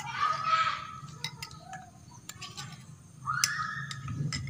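Chickens calling in the background: a drawn-out call in the first second and another rising into a held note near the end, with a few faint light clicks between.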